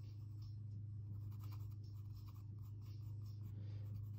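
Pencil shading on sketchbook paper: faint, irregular short strokes of graphite scratching back and forth, over a steady low hum.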